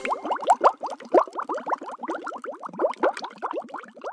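Cartoon underwater bubbling sound effect: a rapid stream of small plops, each rising in pitch, about eight to ten a second.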